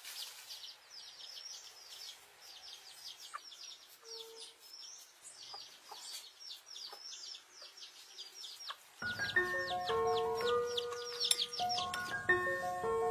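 Birds chirping rapidly: a dense run of short, high, falling chirps. About three quarters of the way through, a light mallet-percussion melody comes in with the chirps.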